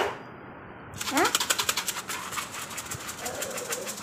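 Rapid, even mechanical ticking, with a short rising voice-like sound about a second in.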